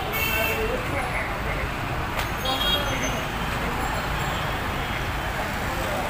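Busy street traffic: a steady din of auto-rickshaw, motorcycle and car engines, with horns tooting briefly near the start and again between two and three seconds in.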